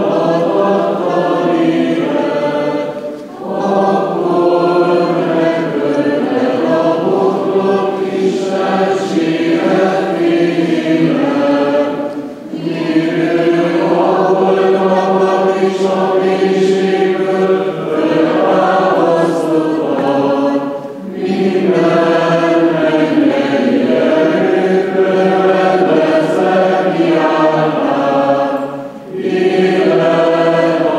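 Group of voices chanting unaccompanied Byzantine-rite (Greek Catholic) funeral chant, sung in long phrases with short breaks about every nine seconds.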